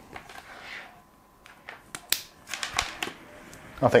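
Small plastic clicks and ticks with light cable rustling as a fan's connector is handled and plugged into an ARGB fan controller hub.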